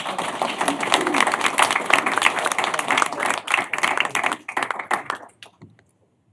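A roomful of people applauding, dying away about five seconds in.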